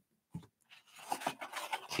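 Handling of a cardboard perfume box: a single light tap about a third of a second in, then faint scraping and rustling of card.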